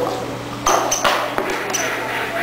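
Short high-pitched pings recurring about once a second, over a steady low hum. A sudden knock comes about two-thirds of a second in.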